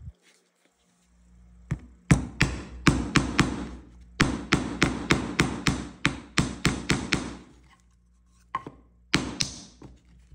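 Steel Estwing claw hammer tapping 4d nails into a pine board: quick sharp strikes, about three a second, in two runs with a short break between. A few more strikes come near the end.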